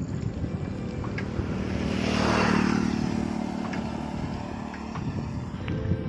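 A motor vehicle passing close by: its noise swells to a peak about two and a half seconds in, then fades away.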